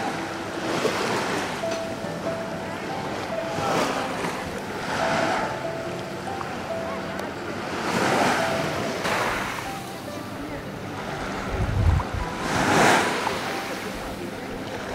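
Small sea waves washing in shallow water, in surges every couple of seconds, loudest near the end. Low rumbling wind buffets on the microphone come with the last surge.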